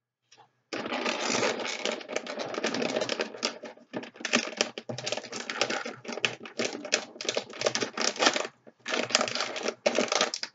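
Clear adhesive tape being pulled off the roll in crackling stretches and pressed onto a crinkling plastic snack bag to seal it shut. The rapid crackle starts about a second in and keeps going with short breaks.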